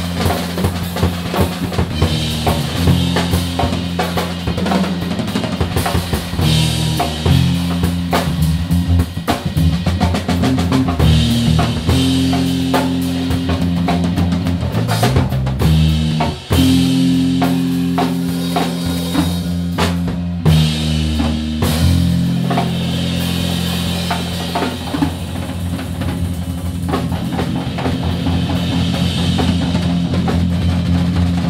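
Live instrumental band of drum kit, upright bass and electric bass: busy drumming with kick, snare and cymbals over held low bass notes that change every second or two.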